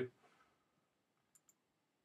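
Near silence, then two faint computer-mouse clicks in quick succession about a second and a half in.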